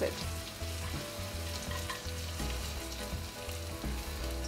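Chopped onion, garlic and chillies sizzling steadily in hot olive oil in a pot as they are stirred, with a few light scrapes from the spatula.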